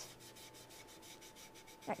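Faint rubbing of a damp sponge over a textured clay slab in quick, repeated strokes, wiping underglaze back off the raised pattern.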